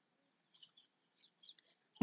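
Near silence with a few faint, short high chirps, about half a second in and again just past one second.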